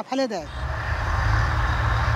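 A steady low rumble with a hiss above it, an outdoor ambient sound that starts as a man's voice stops.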